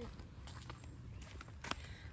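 Quiet footsteps on a dirt forest trail, with a low rumble beneath them and one sharper click near the end.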